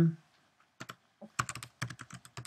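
Typing on a computer keyboard: a quick, irregular run of keystrokes starting about a second in as a short word is entered.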